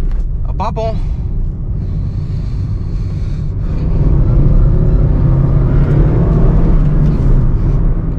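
Engine and road rumble inside a Honda City's cabin at highway speed, from its i-VTEC petrol four-cylinder and tyres. The rumble grows louder about four seconds in as the car picks up speed.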